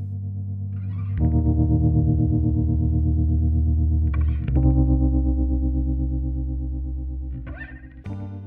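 Closing music: sustained electric guitar chords with effects, a new chord struck about every three seconds, slowly fading toward the end.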